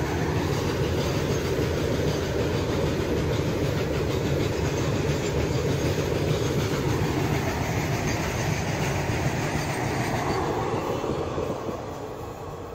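Freight train of open steel wagons rolling past, its wheels running steadily on the rails, fading away near the end as the last wagon goes by.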